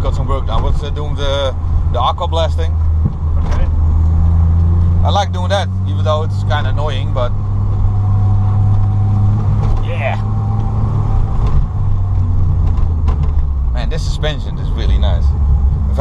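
Peugeot 205 Dimma's turbocharged engine running under way, heard inside the cabin as a steady low drone. The engine note climbs a few seconds in as the car pulls, holds, then falls back about twelve seconds in.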